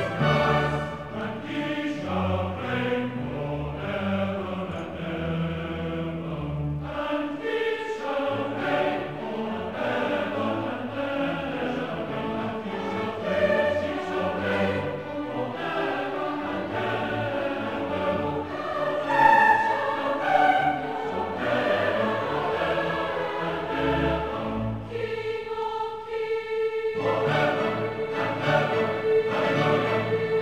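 Large mixed choir singing a classical choral work in several parts. Near the end the low voices drop out briefly under one held note, then the full choir comes back in.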